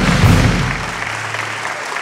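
Audience applauding in a large hall, over event music whose beat fades out about halfway through.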